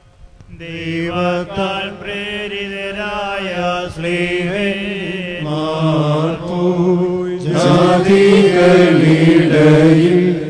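Liturgical chant of the Syriac Orthodox Holy Qurbana, sung in steady sustained notes. It begins about half a second in and grows louder and fuller in the last few seconds.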